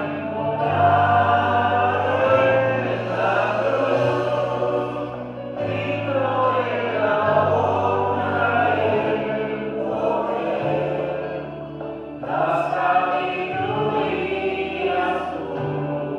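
Choir singing a slow sacred piece over sustained low accompaniment notes, in phrases with two short breaks between them.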